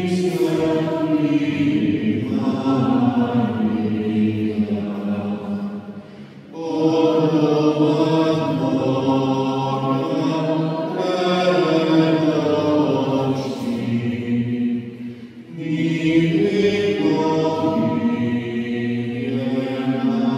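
A choir singing slow, sustained chant-like phrases, with short breaks between phrases about six and fifteen seconds in.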